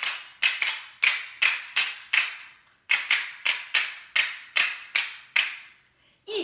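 A pair of small cup-shaped hand cymbals struck together again and again, about two or three clear metallic rings a second, each ring fading before the next. The strikes come in two runs with a short pause between them.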